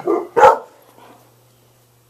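A dog barking, with a sharp, very loud bark about half a second in. It is an alert bark at what the owner thinks are squirrels outside.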